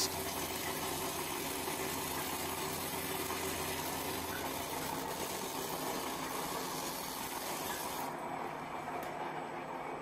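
Radial tire shredder running: a steady electric-motor hum under an even mechanical whir, with no distinct cutting strikes. About eight seconds in the higher hiss drops away, leaving the lower hum.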